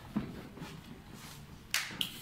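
Quiet room with a light click just after the start and one short, sharp rustle-like noise near the end.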